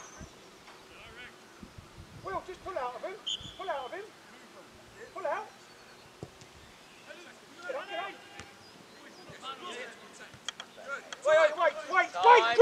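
Distant shouts and calls of footballers on the pitch, short calls every second or two, with louder shouting starting near the end.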